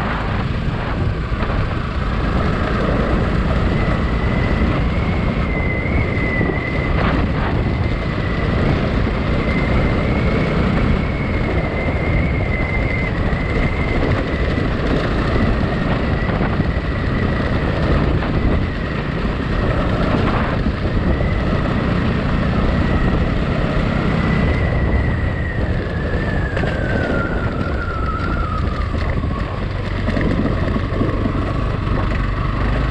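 Motorcycle engine running under way on a rough gravel road, with wind buffeting the microphone and a few knocks from bumps. The engine note holds steady, then drops over the last few seconds as the bike slows.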